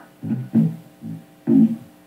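Amplified electric guitar playing a riff of separate low plucked notes, about two or three a second.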